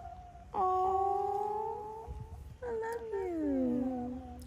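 A brown hen calling: two long drawn-out calls, the first starting about half a second in and holding fairly steady, the second following about a second later and falling in pitch.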